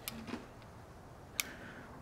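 Quiet handling of small workshop parts with one light, sharp click about one and a half seconds in, as of a metal socket or the plastic fuel meter body being moved or set down.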